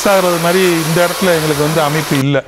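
A man talking over a steady, even hiss of noise; the hiss cuts off suddenly just after this stretch.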